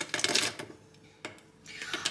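Cashew nuts dropped by hand into the beaker of a stick blender: a quick run of light clicks in the first half-second, and one more click a little over a second in.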